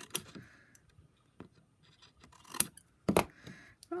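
Large metal scissors cutting through thin cardstock: a few separate snips with pauses between, the loudest near the end.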